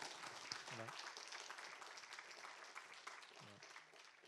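Faint audience applause, a dense even patter of many hands clapping that slowly dies away.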